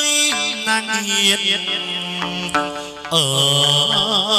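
Chầu văn (hát văn) ritual music: long, bending held notes with a downward glide about three seconds in, then a wavering held note, over instrumental accompaniment with sharp percussion clicks.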